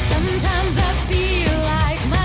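Symphonic metal song: a woman's lead vocal sung over a full band with heavy guitars, bass and drums.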